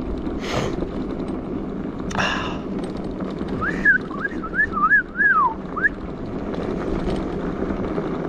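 Steady rumble of an e-bike riding on a dirt trail, with two short barks from a dog in the first couple of seconds. Then someone whistles a quick string of six or seven rising-and-falling notes for about two seconds.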